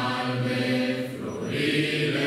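A group of voices singing together, holding long, slow notes.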